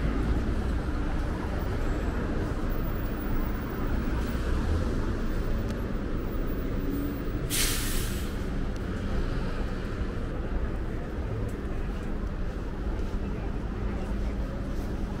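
Steady city traffic noise, with a city bus's air brakes letting out one sharp hiss, under a second long, about seven and a half seconds in.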